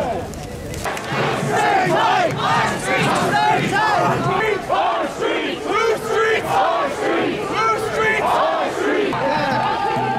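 Crowd of marching protesters shouting and yelling, many voices overlapping, with one voice holding a longer shout near the end.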